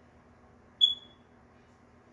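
A single short, high-pitched electronic beep about a second in, fading quickly, over a faint steady hum.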